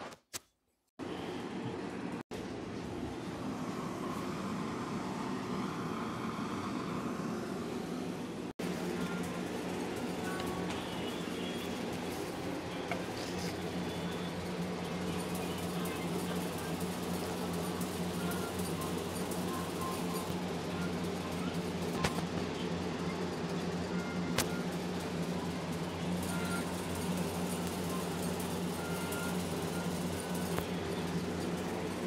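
A steady, even low hum with several fixed pitches, broken by brief dropouts about two and eight seconds in, with a few faint clicks in the second half.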